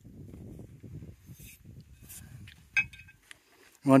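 Steel pipe sections of a homemade pipe shotgun handled, with low rubbing noise, then a sharp metallic clink near three seconds in.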